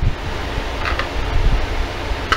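Hands squeezing and working a plastic Mash'em Hatch'em toy egg, a balloon-type toy that inflates, giving a steady rushing noise with a low rumble.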